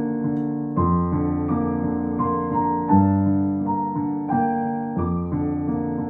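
Background piano music: gentle chords and a melody, with a new chord about every two seconds.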